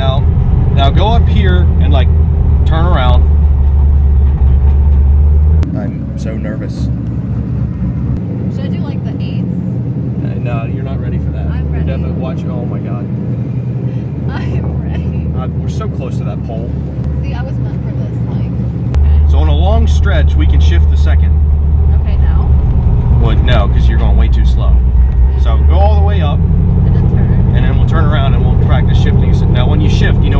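LS1 V8 of a swapped BMW E36, heard from inside the cabin, running at low revs with a steady deep drone. The drone drops in level about six seconds in and comes back strong at about 19 seconds.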